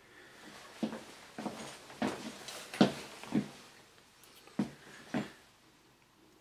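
Plastic being handled: a run of short crackles and clicks, about seven over five seconds, with a faint rustle between them, as the Core i7 processor is lifted from its plastic packaging and brought over the motherboard on its anti-static bag.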